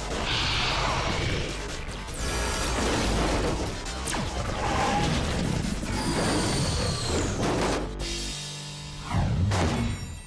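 Cartoon robot-combining sequence: mechanical clanks, crashes and whooshes over dramatic background music, with a last loud hit near the end.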